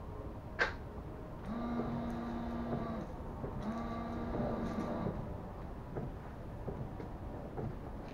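A click, then a car's electric windscreen washer pump and wiper motor running in two spells of about a second and a half each, a steady hum while fluid sprays and the wiper blades sweep the wet glass, as the re-aimed washer jets are tested.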